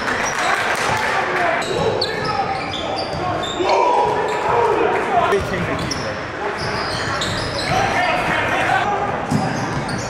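Basketball game sounds: the ball bouncing, many short high squeaks from sneakers on the court, and players' voices calling out, loudest a few seconds in.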